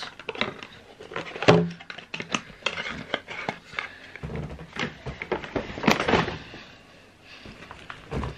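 Handling noise close to the microphone: scattered knocks, small thuds and clicks as products are put down and picked up, with a longer stretch of rustling in the middle.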